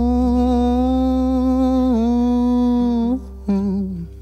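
A male singer holds one long sung note with vibrato over a steady low bass at the close of a Filipino pop ballad. The note breaks off about three seconds in, a brief last note follows, and the song fades out.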